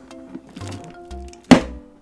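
Background music with a steady beat, and about one and a half seconds in a single sharp thunk as the handle of a mug heat press clamps down on the mug.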